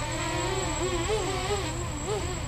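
Quadcopter's electric motors and propellers whining in a low hover, at low hover throttle. The pitch keeps wavering up and down.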